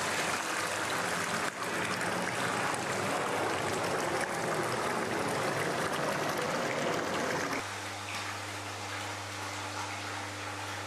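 Water pouring from a koi pond filter's outlet pipe and splashing into the pond: a steady rush of falling water. About three-quarters of the way through it cuts off abruptly to a quieter steady low hum.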